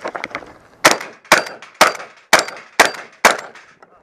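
Six shotgun shots fired in quick succession, about half a second apart.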